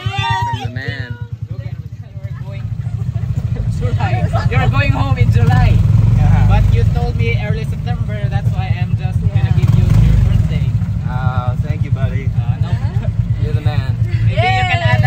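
Motorcycle engine of a passenger tricycle (motorcycle with covered sidecar) running and pulling along. It gets louder a couple of seconds in as it picks up speed, and voices talk over it.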